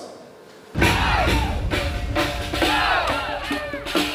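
A crowd shouting together over music with a heavy drum beat. The sound starts suddenly about three-quarters of a second in, after a brief lull.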